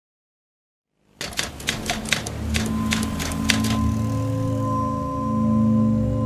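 Typing sound effect: a quick, irregular run of key clicks starting about a second in and stopping by about four seconds, while the title is typed out. Under it is a low steady drone, with a faint held tone entering partway through.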